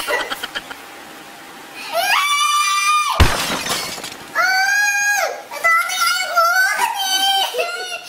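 A woman shrieking and squealing in disgust, long high-pitched cries broken into several bursts, while feeling something unseen with her hands. A single sharp thump sounds about three seconds in.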